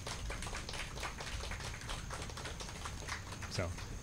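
Applause from a small audience: many quick hand claps at a moderate level.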